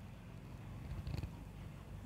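Quiet pause in speech: low, steady room hum picked up by the microphone, with a few faint small ticks a little past the middle.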